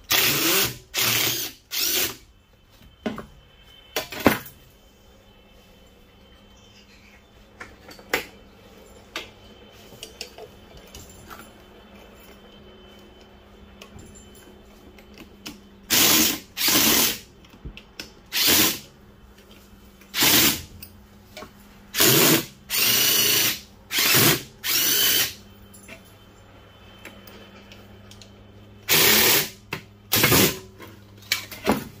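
Cordless drill running in short bursts of under a second, backing fasteners out of an air-conditioner condenser fan motor and its fan blade. Three quick bursts come at the start and one a couple of seconds later, then a long pause with small clicks and taps, then a run of about nine bursts in the second half.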